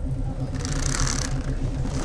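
Steady low machine hum with an even, repeating pulse, as in a spaceship-bridge ambience, with a burst of hiss about half a second in that lasts under a second.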